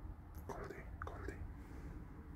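A brief soft whispered call, a little under a second long, over a low steady hum.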